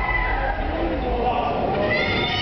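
Human voices, with high calls sliding up and down in pitch.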